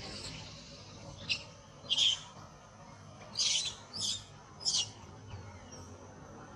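Young macaque crying in five short, high-pitched squeals, spaced about half a second to a second apart between one and five seconds in.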